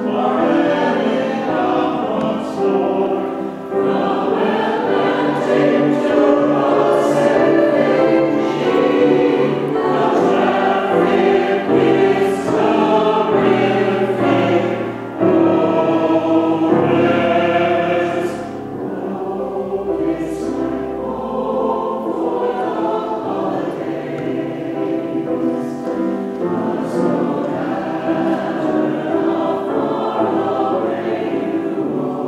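A mixed choir of men's and women's voices singing together. There is a brief breath about halfway through, and the singing is softer over the last third.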